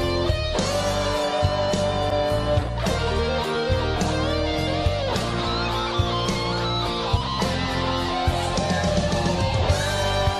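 A rock ballad playing: a guitar melody with sustained, bending notes over bass and a slow, steady drum beat.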